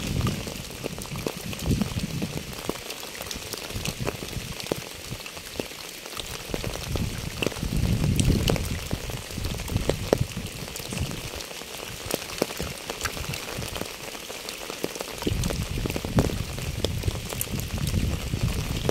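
Rain falling on a wet asphalt path and its puddles, many separate drops pattering over a steady hiss. A low rumble swells and fades away three times, near the start, around the middle and near the end.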